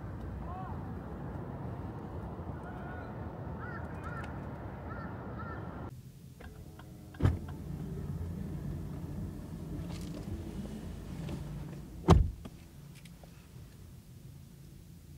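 Two heavy thumps in a car cabin, a few seconds apart, the second the loudest; a steady low hum runs between them and drops after the second.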